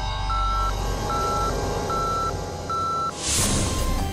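A single-pitched electronic beep repeating evenly, about once every 0.8 seconds, four beeps in all, over a low drone. The beeping stops about three seconds in and a short whooshing swish follows.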